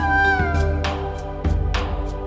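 Dramatic background music. A held melody line bends slightly and fades out in the first half-second over sustained chords, with a deep hit at the start and another about one and a half seconds in.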